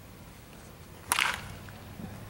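Baseball bat hitting a ball about a second in: one sharp crack that trails off briefly.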